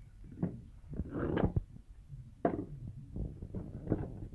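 Handling noises: a few short knocks and rustles as objects are picked up and moved about on the work surface, over a low steady background hum.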